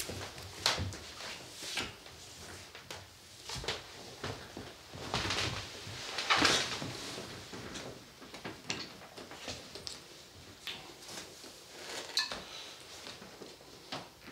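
Rustling and scattered light knocks and clicks from two people moving against each other at close range, with one louder rustling swell about six seconds in.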